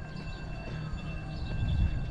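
Outdoor background noise with a steady low rumble and faint distant voices.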